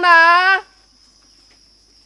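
A woman's voice draws out the last word of a sentence for about half a second. After it, only a faint, steady, high-pitched insect drone remains.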